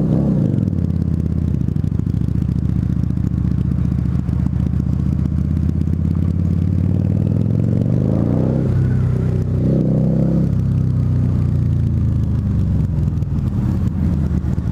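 Harley-Davidson V-Rod Muscle's V-twin running through Vance & Hines Competition Series slip-on exhausts while riding slowly in traffic, heard through a microphone inside the rider's helmet. The engine holds a steady low note, and the revs rise and fall again about two thirds of the way through.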